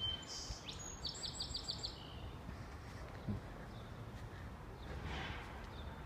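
A small songbird singing: a quick run of about six high chirps about a second in, over a steady low background hum of outdoor noise.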